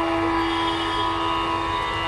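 Tanpura drone: a steady, sustained sounding of the open strings with many overtones, unchanging throughout and with no melody over it.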